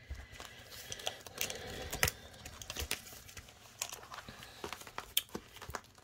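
Plastic binder sleeves and pages crinkling and rustling as they are handled and moved, with scattered light clicks.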